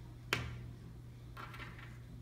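A plastic measuring spoon clicking sharply against a container of baking soda, then a short scrape as it scoops the powder, over a faint steady low hum.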